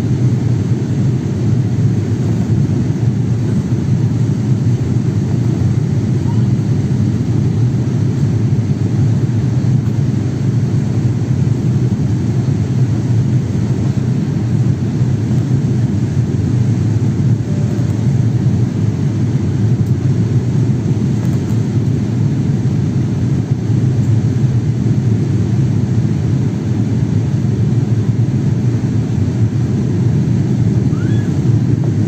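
Steady jet airliner cabin noise on the approach to land: engine and airflow noise heard from inside the cabin, a deep even rumble at a constant level.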